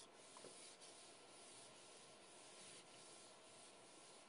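Near silence: faint room tone with light rubbing sounds.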